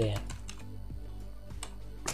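Typing on a computer keyboard: a run of light key clicks as a line of code is entered.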